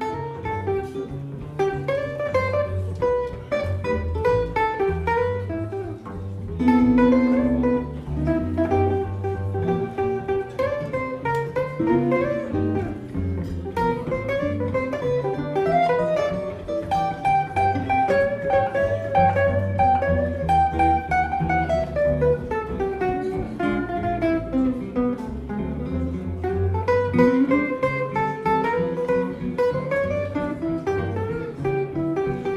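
Live jazz from two guitars, an electric and a hollow-body archtop, playing interwoven melodic lines over double bass, with a stretch of longer held notes in the middle.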